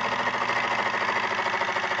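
Homemade soda-can Stirling engine running steadily under an alcohol-lamp flame, its flywheel and crank linkage making a fast, even mechanical rattle.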